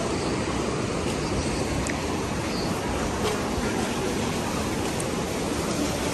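Steady rush of a fast white-water mountain river, an even hiss of flowing water that doesn't rise or fall, with a few faint ticks over it.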